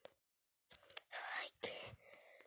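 A child whispering close to the microphone: a few breathy, unpitched bursts of whispered words starting less than a second in.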